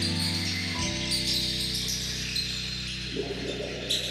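Live guitar, bass and percussion trio playing: sustained low bass notes, changing about a second in, under a steady high shimmer of hand percussion, with a busier, rougher texture joining about three seconds in.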